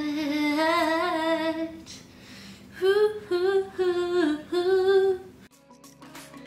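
A woman singing a wordless tune: one wavering held note for about two seconds, a short breath, then four short notes. Music comes in near the end.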